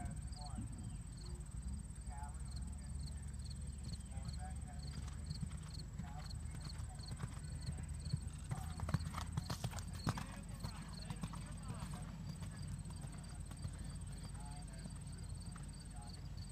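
Hoofbeats of a horse cantering over a show-jumping course on dirt footing, loudest in a run of thuds about halfway through as it jumps a fence. A steady, pulsing insect chirp sits behind them.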